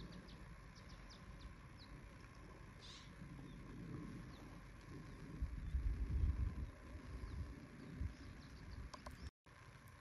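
Outdoor ambience: a faint steady rush, the dull roar of the Crooked River below the rim, with small birds chirping now and then. A low buffeting of wind on the microphone swells a little past the middle, and the sound drops out for an instant near the end.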